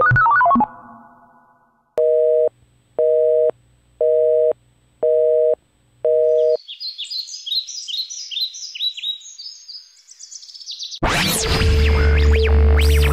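A telephone busy signal: five even two-tone beeps, each half a second long with half a second between, in the North American busy-tone pattern. It is followed by a run of high, falling chirps, and loud synthesizer music cuts in about a second before the end.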